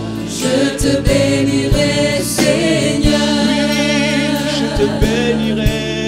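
Live worship band and singers performing: several voices singing long, wavering notes over acoustic guitar, keyboard and a drum kit, with kick-drum hits scattered through.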